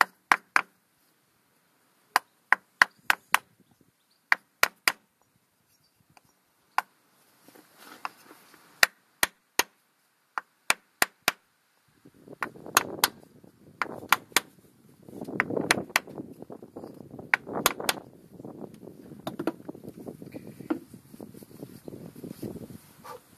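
A hammer tapping a block of wood held against a plug, driving it into the camshaft bore of a tractor engine: sharp knocks in short groups of two or three, repeated many times. From about twelve seconds in, a rustling, scraping noise runs under the knocks, and the knocks stop a few seconds before the end.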